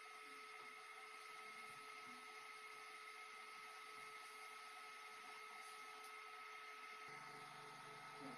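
Near silence: a faint, steady hum with hiss.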